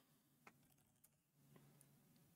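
Near silence with a few faint computer keyboard keystroke clicks, the clearest about half a second in and another near the end.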